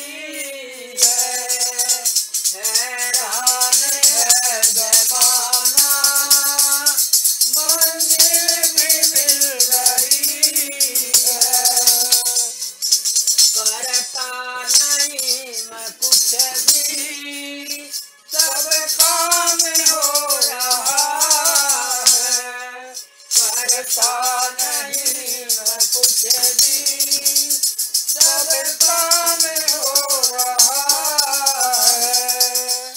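A woman singing a Hindi devotional bhajan in long, held phrases over a continuous rhythmic shaken rattle. The voice breaks off briefly twice in the second half.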